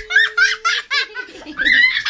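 A young child laughing: a run of quick, high-pitched giggles, then a longer squealing laugh near the end.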